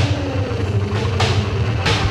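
Instrumental psychedelic rock: a low bass drone and drum hits under a pitched sound that slides downward over the first second and a half, then levels off.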